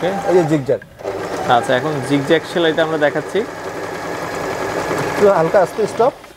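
Butterfly electric sewing machine running steadily, stitching a zigzag seam through cloth, starting about a second in.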